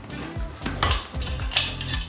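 A bicycle tyre being worked off a minivelo's rim by hand: two short scraping bursts about a second in and near the end, over steady background music.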